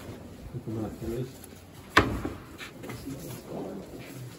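A single sharp knock about halfway through, with faint low voices murmuring around it.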